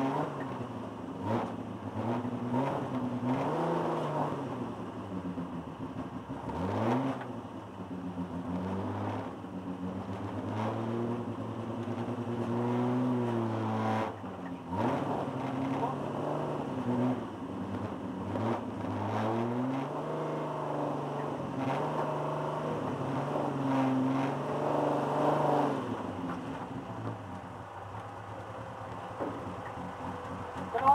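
Super Rod racing car engine revving hard under racing load, its pitch climbing and falling again and again as it accelerates and backs off. There is a sharp climb about seven seconds in and again about fourteen and a half seconds in.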